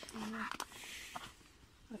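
A short, low murmured voice sound, then a few light clicks and rustles as apples are handled.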